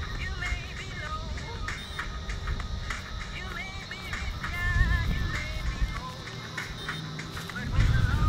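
Background music playing at a moderate level over a low rumble.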